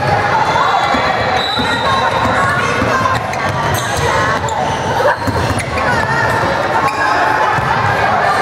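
Basketball bouncing on a gym court floor during a game, with scattered sharp impacts, under players and spectators calling out in a large gym.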